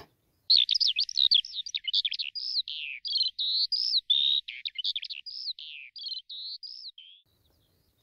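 Eurasian skylark singing: a rapid, unbroken stream of high warbling and trilling notes that starts about half a second in and stops about a second before the end.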